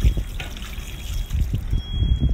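Bathing water poured over the body and trickling off, louder again near the end.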